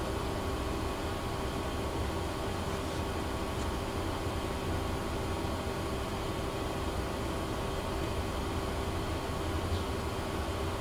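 Steady background hum and hiss with a low rumble and a faint steady tone, unchanging throughout.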